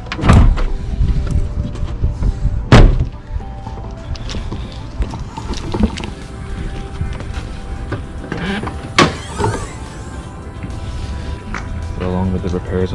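Background music, with three loud thunks: one just after the start, the loudest about three seconds in, and another about nine seconds in, as a car's bonnet release is pulled and the bonnet is unlatched and opened.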